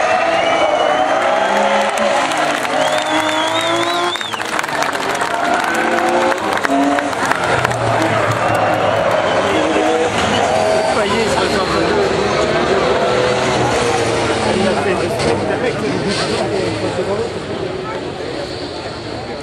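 A man's voice commentating over the circuit loudspeakers, with race car engines running in the background.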